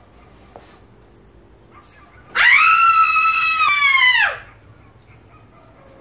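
A woman's long, shrill scream of outrage. It rises sharply at the start, holds for about two seconds, then sags and breaks off.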